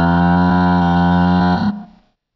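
A cartoon character's long, loud, low cry held on one steady pitch, stopping abruptly near the end.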